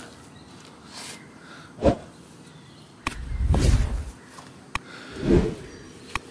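A shovel digging into loose soil. There is a sharp knock about two seconds in, a rough stretch of scraping and soil being shifted about a second later, and another click and a short scrape near the end.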